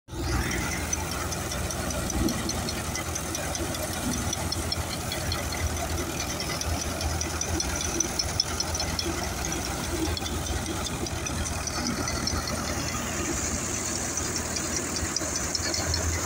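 Massey Ferguson 7250 tractor engine running steadily under load, driving a thresher as wheat sheaves are fed in. The engine's drone mixes with a fast, even clatter from the threshing machine.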